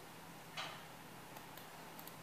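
Computer mouse clicking: one soft click about half a second in, then a few faint ticks of the scroll wheel as the drawing is zoomed, over a low steady hum.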